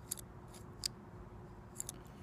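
A handful of faint, short, sharp clicks scattered through a pause, over a faint steady hum.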